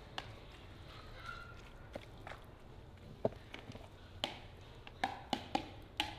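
Wooden chopsticks tapping and clinking against a glass mixing bowl while stirring a mixture: scattered light taps, coming a little closer together near the end.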